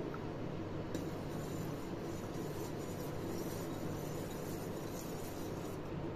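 A steel spoon gently stirring milk in a stainless steel pot, mixing in curd starter, with a few faint clinks of the spoon against the metal. A steady low hum sits underneath.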